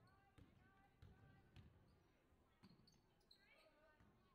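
Faint basketball dribbling on a hardwood gym floor: a row of thuds about every half second, with players' voices calling out and brief shoe squeaks.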